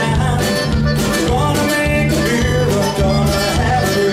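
Live conjunto band playing an instrumental passage: button accordion melody over bass, guitars and drums with a steady beat.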